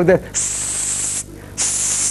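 A man hissing through his teeth twice, a long hiss of nearly a second and then a shorter one: the hiss used to call someone over, like a whistle.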